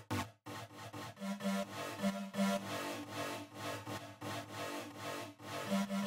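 Layered electronic synth lead loop playing a rapid, choppy pattern of short repeated notes. It runs through a reverb set to very short decay times, whose mix is turned up to fully wet.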